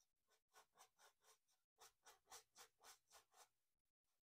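Very faint, rhythmic brush strokes on canvas: a paintbrush loaded with oil paint dabbed in short up-and-down strokes, about four a second, with a brief pause partway through.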